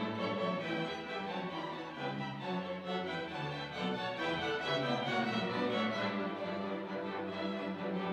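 Symphony orchestra playing, bowed strings carrying sustained notes that change every second or so.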